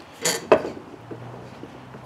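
A plastic glue squeeze bottle being handled against the wooden rocker and chair leg: a brief scrape, then one sharp click about half a second in.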